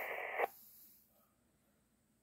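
Ham radio transceiver's speaker giving the hiss of a received transmission, which cuts off with a sharp click about half a second in as the other station unkeys; the audio then falls away to near silence.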